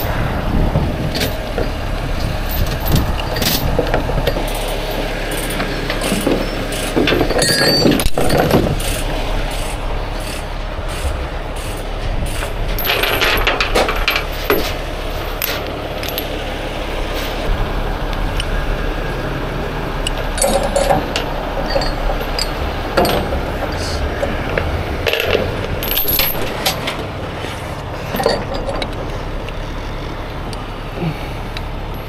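Steel rigging chains clinking and rattling in irregular bursts as they are handled and hooked to a lifting block, over a heavy tow truck's engine running steadily.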